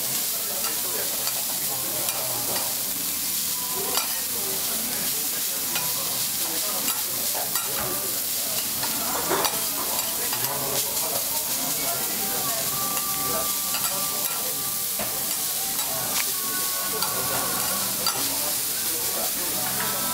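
Shredded cabbage sizzling on a hot steel teppan griddle while metal spatulas mix and scrape through it: a steady frying hiss with frequent short clicks of metal on the griddle.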